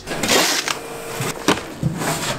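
Steel shovel digging soil out of a metal trailer, the blade scraping along the deck in one long scrape about half a second in, then quieter scraping and a sharp knock about a second and a half in.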